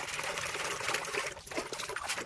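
A hand swishing and splashing through soapy water in a plastic basin, stirring in homemade powder detergent to work up suds; the splashing eases briefly about one and a half seconds in.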